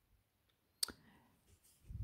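A single sharp click a little under a second in, followed by a brief faint rustle, during an otherwise quiet pause.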